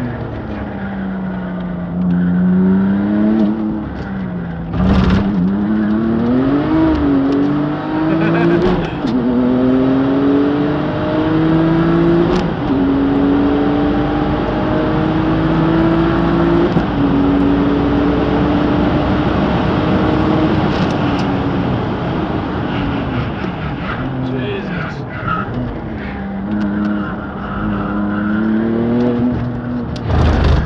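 Tuned Porsche sports car engine heard from inside the cabin, accelerating hard through the gears. The pitch climbs, then drops sharply at each of several upshifts. Later it falls and wavers as the car slows for a corner, then climbs again near the end, with a brief thump about five seconds in.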